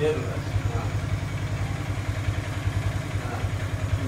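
A low, steady mechanical drone with a fast, even pulse, like a motor running, under brief faint speech.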